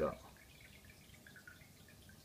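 The end of a spoken word, then near silence: faint room hiss with no distinct sound.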